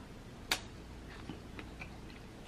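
Close-up mouth sounds of eating a piece of juicy rambutan flesh: one sharp wet click about half a second in, then a few faint smacks.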